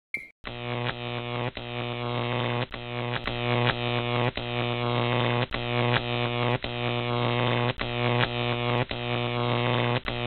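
Electrical buzz of a neon sign lighting up: a short tick, then about half a second in a steady low buzzing hum that drops out briefly roughly twice a second, like a flickering tube.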